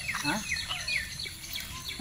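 A small bird singing a fast run of short, high chirps, each sliding downward in pitch, about six a second, that stops about a second and a half in.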